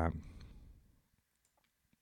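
The end of a man's spoken word fading out, then near silence with a few faint computer-mouse clicks.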